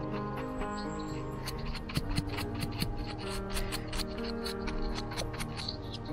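Background music with steady held notes. Over it comes a run of irregular scratchy clicks from a mushroom knife's bristle brush and blade cleaning soil off a porcini stem, busiest from about a second and a half to five and a half seconds in.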